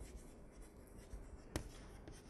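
Chalk writing on a blackboard: faint strokes and small taps, with one sharper tap about one and a half seconds in.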